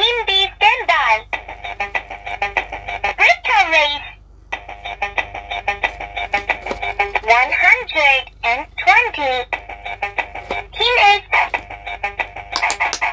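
Super Mario electronic quick-push pop-it game playing its beeping, gliding electronic sound effects over a steady high tone, with quick clicks as its light-up buttons are pressed. The sounds break off briefly about four seconds in.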